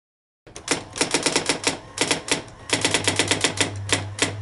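Typewriter keys clacking in quick runs of strikes, with brief pauses between runs. A low steady hum comes in about halfway through.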